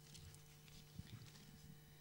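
Near silence: room tone with a faint steady hum and a soft click about a second in.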